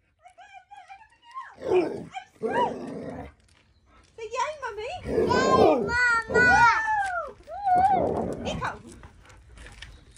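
A dog vocalizing close to the microphone while being lifted off a trampoline: a thin whine near the start, then a run of loud, rising-and-falling howl-like calls in the middle, with scuffling between.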